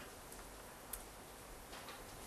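A few faint, sparse clicks of computer keyboard keys, the clearest about a second in, over faint room hiss.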